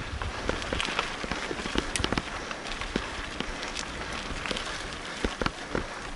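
Mountain bike tyres rolling over a loose gravel road: a steady crunch with scattered sharp clicks of small stones.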